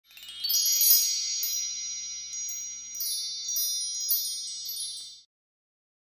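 A sparkly chime sound effect: high, tinkling bell-like notes struck over and over in a shimmering cluster. It swells in the first second and fades out about five seconds in.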